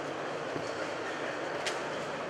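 Steady background din of a busy exhibition hall, with one short click about three-quarters of the way through.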